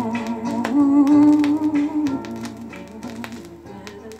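Closing bars of a pop song: a held note with vibrato over drum hits, fading out over the second half.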